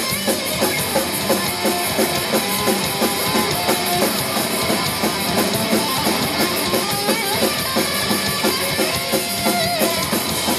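A live hardcore punk band playing loud: distorted electric guitars and bass over a fast, steady drum beat, with no vocals in this stretch, heard from the crowd.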